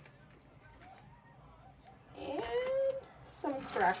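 A person's voice: after about two seconds of near silence, a short drawn-out vocal sound, then a single spoken word near the end.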